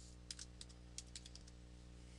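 Computer keyboard being typed on: a quick run of about nine faint key clicks in the first second and a half, over a steady low hum.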